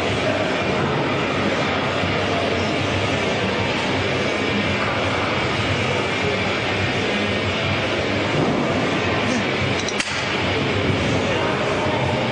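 Steady gym background din: a dense rumbling wash of noise with indistinct voices mixed in, and one sharp click about ten seconds in.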